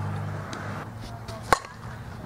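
A single sharp crack about one and a half seconds in: a softball bat striking a soft-tossed ball. A steady low hum lies underneath early on.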